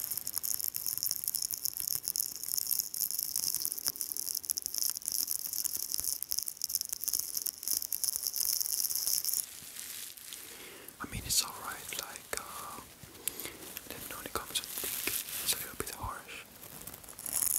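ASMR sponge sounds close to the microphone: a steady, crackly fizz of sponge being rubbed and squeezed for about the first nine and a half seconds, then softer scattered rustles and taps with a soft thump about halfway.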